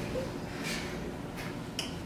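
Three short, sharp clicks or snaps, about two-thirds of a second apart, over a steady low hum.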